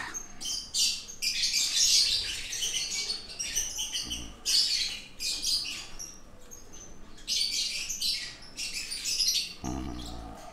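High-pitched bird chirping in quick runs of a second or two, with short pauses between them.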